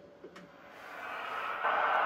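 Hiss from the Drake 2-C receiver's audio output, swelling as the audio gain is turned up and then holding steady, after a few faint clicks. The audio stage works, but no signals come through: the RF section is dead.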